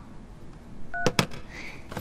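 A smartphone's short electronic beep about a second in as the call is ended, followed at once by two sharp clicks.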